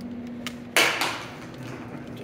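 An empty aluminium drink can hitting the concrete shop floor once with a sharp clatter that quickly dies away, over a steady low hum.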